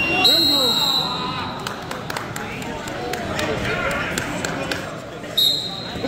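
A referee's whistle blown twice, a steady high blast of under a second near the start and a shorter one near the end, over crowd voices.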